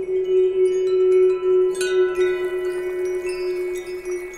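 Shimmering wind-chime sound effect over one held low tone, with high ringing notes coming in one after another and a brighter chime strike a little before two seconds in: a sound effect for a magic spell being cast.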